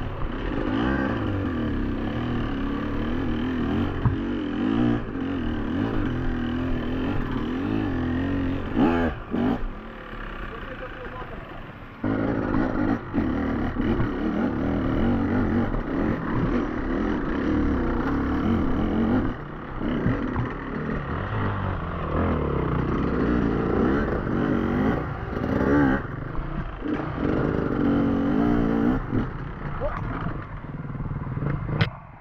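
Beta enduro motorcycle engine revving up and down constantly as the bike is ridden over rocky single track. About ten seconds in it drops back quieter for a couple of seconds, then picks up again.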